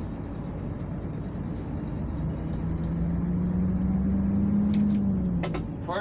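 Mercedes-Benz Actros 2040 truck's diesel engine heard from inside the cab, pulling in third gear high, its note rising slowly as the truck gains speed. Near the end the engine note drops as the driver lifts off for the shift to fourth gear high, with a few short clicks.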